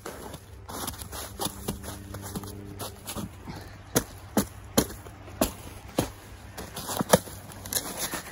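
Footsteps in shallow snow over twigs and dry leaves: a series of sharp, irregular crunches, coming thicker in the second half.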